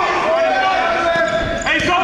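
Basketball being dribbled on a hardwood gym floor during play, with indistinct voices in the hall behind it.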